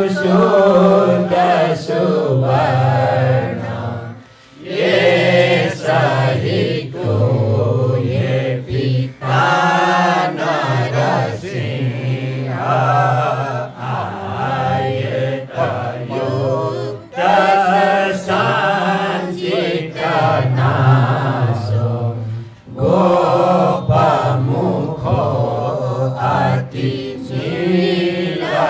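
Men's and women's voices chanting devotional verses together from texts, with short breaks for breath about four seconds in and again after about twenty-two seconds.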